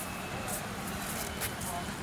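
Outdoor background noise: a steady hum of traffic with faint, indistinct voices and a few light clicks.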